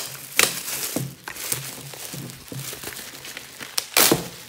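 Clear plastic wrapping being peeled and pulled off a framed canvas, crinkling and rustling throughout, with sharp louder crackles at the start, about half a second in and near the end.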